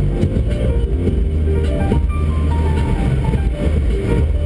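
Background music: a melody of held notes stepping up and down over a deep bass line.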